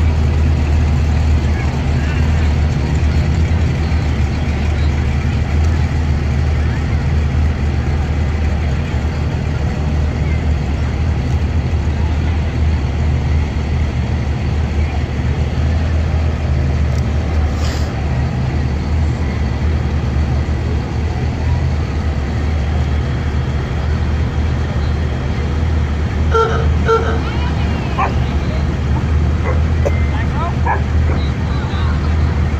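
Parade cars and trucks driving slowly past at low engine speed, a steady low engine rumble. A horn beeps twice briefly near the end.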